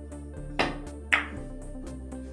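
Two sharp clicks of a carom billiards shot about half a second apart, the second louder: the cue tip striking the cue ball, then the cue ball clicking into an object ball. Both sound over electronic background music with a steady beat.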